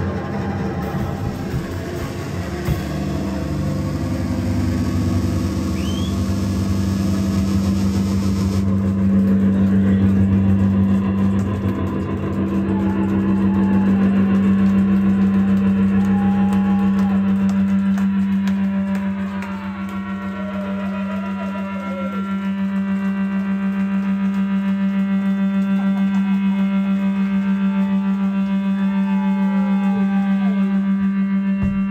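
Live rock band's amplified outro: drums and cymbals crash along with the band for about the first nine seconds, then drop away, leaving a loud sustained drone from the amplified instruments with slow sliding, wavering pitches over it.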